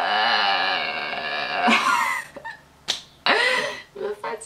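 A woman's voice holding one long, wavering non-speech vocal sound for about two seconds and ending in a breathy rush, then a sharp click and a brief second vocal sound near the end.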